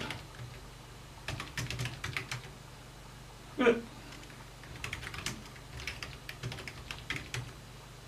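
Typing on a computer keyboard: a password and then a command entered at a Linux console, in two runs of quick key clicks with a short pause between them, over a steady low hum.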